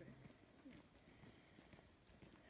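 Near silence, with faint scattered ticks and scuffs.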